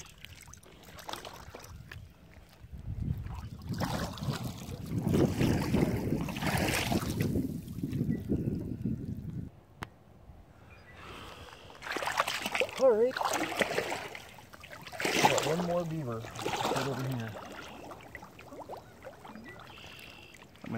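Water splashing and sloshing as a person in waders moves and handles a trapped beaver in shallow water. The splashing stops abruptly about ten seconds in, then comes back in shorter stretches.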